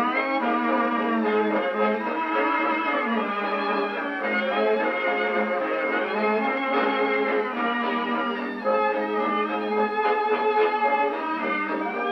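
A Victrola phonograph playing a 78 rpm shellac record of a 1920s dance-orchestra number, with violins carrying the melody. The sound is narrow and thin, with no deep bass and no top end.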